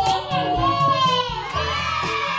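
Young children shouting and cheering together, one high voice sliding down in pitch, over background music with a steady beat.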